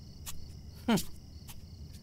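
Steady, high insect chirping, cricket-like, under the scene, with a few faint clicks spread through it. About a second in, a short murmured 'hmm' is the loudest sound.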